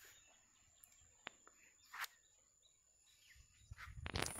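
Near silence of open countryside, broken by a few faint, short bird chirps, the clearest about two seconds in.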